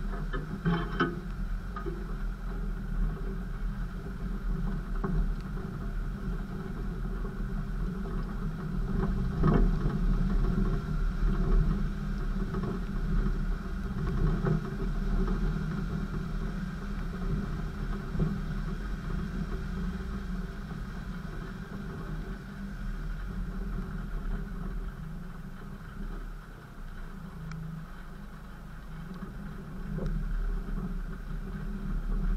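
Land Rover off-roader driving slowly along a muddy track, its engine running with a steady low rumble. A few brief knocks come as it goes over bumps, about a second in and again around ten seconds.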